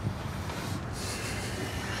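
Steady low hum of a car cabin, engine and road noise while driving, with a soft high hiss coming in about halfway through.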